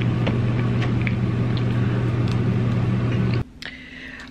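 Loud steady machine hum with a noisy wash over it, with a few light clicks of a plastic fork against a foam takeout container. The hum cuts off abruptly about three and a half seconds in.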